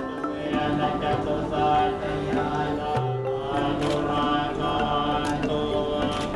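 Buddhist chanting of a mantra, sung in held, stepping notes with musical accompaniment, and a few short light clicks.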